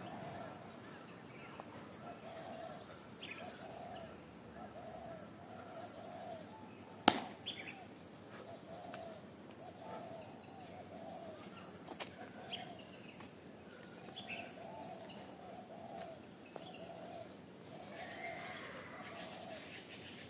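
A sharp smack about seven seconds in and a lighter one near twelve seconds, from the practitioner's strikes during a Hung Gar kung fu form. Under them, a bird repeats a short call over and over.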